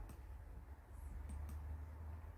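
Faint, scattered clicks of baby spinach and garlic cooking in hot olive oil in a frying pan, a few in two seconds, over a low steady hum.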